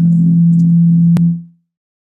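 A steady, loud, low electronic drone from a glitching video-call audio feed: the moderator's laptop audio is malfunctioning. There is a sharp click just before the drone cuts out, about a second and a half in.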